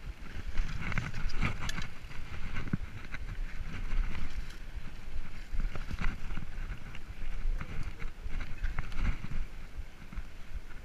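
Mountain bike being ridden along a sandy singletrack trail: wind rumbling on the microphone, with tyre noise and scattered clicks and knocks as the bike rattles over bumps.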